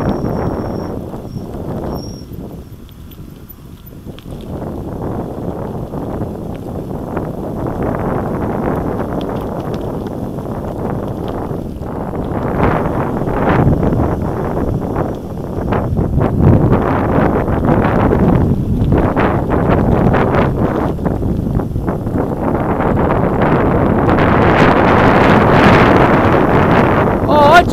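Wind buffeting the microphone of a mountain bike on the move, mixed with the bike rattling and knocking over a rough paved lane. Quieter a few seconds in, then louder through the second half.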